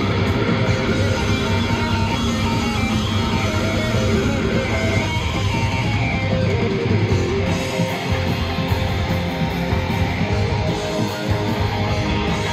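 A live rock band playing loud: electric guitars over bass guitar and drums.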